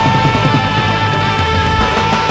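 Loud hard-rock music: one long held high note rings out over a driving drum and bass beat.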